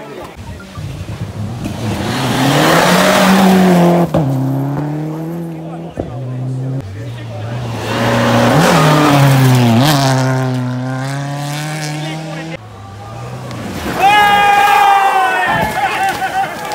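Rally car engine revving hard on a gravel stage, climbing through the gears with sharp breaks at each shift as it approaches and passes. The engine sound cuts off suddenly about three-quarters of the way through, and near the end there is a loud, high shout.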